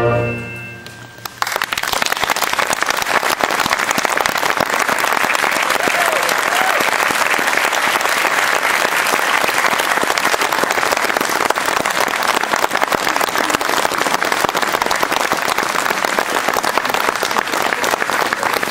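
A wind band's final brass chord is cut off and dies away, and about a second and a half in the audience bursts into steady, sustained applause.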